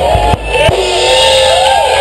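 Live rock band playing loudly: sustained, bending electric guitar notes over bass and drums, with a couple of sharp drum hits.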